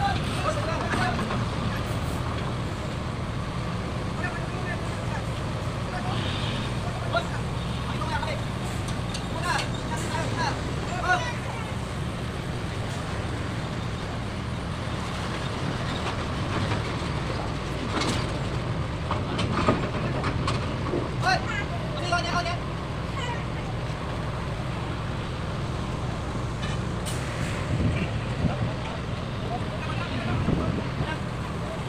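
Steady low diesel drone of a truck driving slowly up the ramp onto a roll-on/roll-off ferry's car deck, with distant voices calling now and then and a few sharp knocks.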